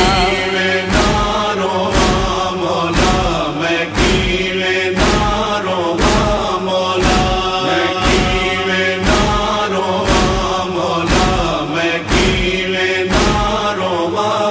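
Noha interlude: a male chorus chanting in sustained tones over a steady beat of sharp slaps about once a second, the matam (chest-beating) rhythm of a Muharram lament.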